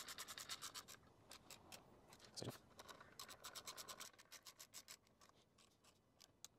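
Small ratchet driver with a 5 mm bit clicking faintly as screws are tightened. The clicks come fast and even, about eight a second, for the first second, then turn slower and sparser and die away about five seconds in. There is one louder knock about two and a half seconds in.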